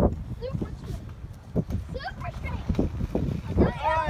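Low rumble of wind on the microphone with a few faint voice fragments, then a loud, high-pitched excited voice starts near the end as a fish is reeled in.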